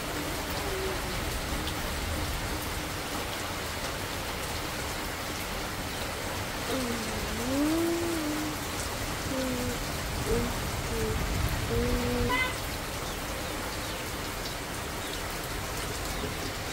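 Heavy rain falling steadily. Around the middle, a person's voice makes a few low, gliding hum-like notes over it.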